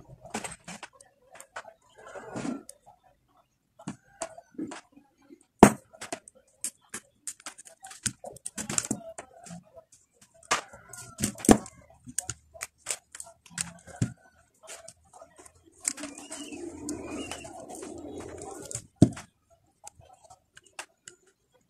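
Faux pearl beads clicking and knocking against one another as the beaded bag is handled and its fishing line is threaded and tied. The clicks come scattered and uneven, with a steadier rustle for a few seconds near the end.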